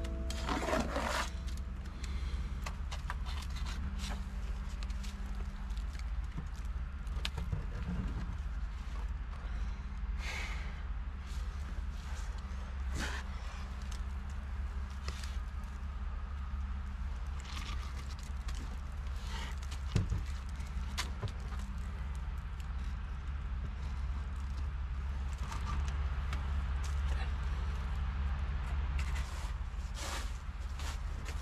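Masonry work on a cinder block wall: scattered scrapes and knocks of a steel trowel working wet mortar and a concrete block being set into it, the sharpest knock about twenty seconds in, over a steady low rumble.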